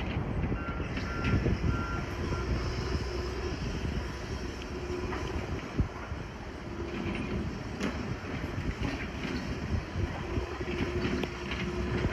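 Volvo tracked excavator's diesel engine and hydraulics running under load as it tears into a wood-frame building, with scattered cracks and knocks of timber breaking. A few short high beeps sound in the first couple of seconds.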